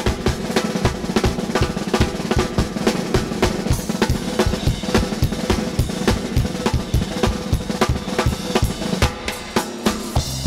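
Drum kit playing a fast, even beat on snare and bass drum, about four to five hits a second, as a drum-led passage of the circus band's accompaniment.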